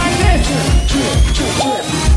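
Loud live concert music: an electronic hip-hop beat with a regular kick drum and a rising synth sweep building up, the kick dropping out briefly near the end.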